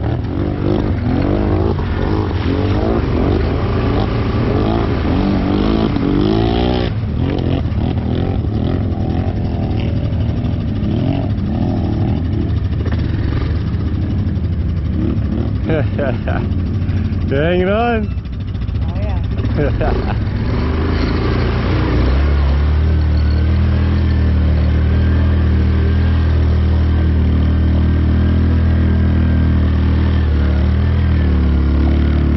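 ATV engine running and revving, its pitch rising and falling again and again, then settling into a steady idle about two-thirds of the way through.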